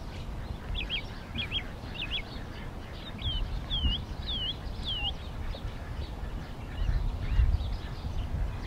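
A bird calling a run of short, high whistled notes, about two a second, the later ones dipping down and back up. A low rumble swells briefly near the end.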